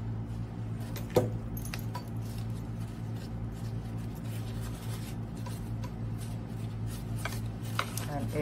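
A steady low hum in the background, with one sharp click about a second in and a few fainter clicks later as craft-foam petals are handled and a plastic glue bottle is set down on a cutting mat.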